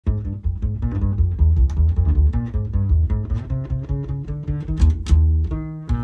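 Jazz quartet's instrumental intro led by a plucked upright double bass playing a low, steady line under chords and sharp percussive accents. It settles on a held chord near the end.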